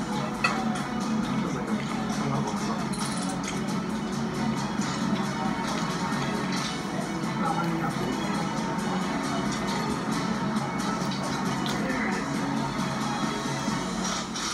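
Background music from a television programme playing in the room, steady throughout.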